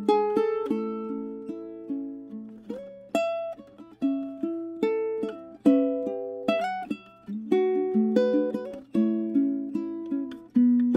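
Curly mango-wood tenor ukulele played fingerstyle: a plucked melody mixed with chords, each note ringing and then fading.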